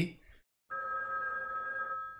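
A steady electronic tone made of a few pitches held together, starting abruptly about two-thirds of a second in and holding without wavering, from the film's soundtrack.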